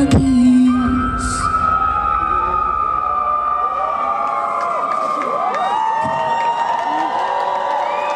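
A concert audience cheering and whistling as a song's beat stops about half a second in, while one held note lingers and slowly sinks in pitch.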